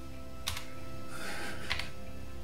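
Two short clicks of buttons being pressed on a Polyend Tracker, one about half a second in and one near the end, over a faint steady low tone.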